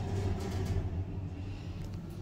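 Schindler lift car travelling between floors: a steady low hum and rumble of the ride, with a few faint ticks about half a second in.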